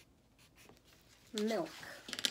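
Faint scratching of a pen writing on paper, then a woman says "milk" about a second and a half in.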